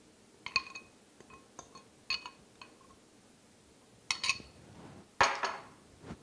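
Metal fork tapping and scraping against a glass mixing bowl, giving a series of short ringing clinks in small groups, with the loudest clink near the end.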